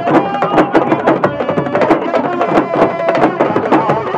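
Ensemble of Senegalese sabar drums struck with sticks and bare hands, a dense, fast rhythm of sharp strokes, with a voice singing over the drumming.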